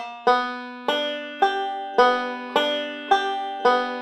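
Five-string banjo picked slowly and evenly, about two notes a second with each note left ringing: a Scruggs-style phrase running from a slide into forward rolls.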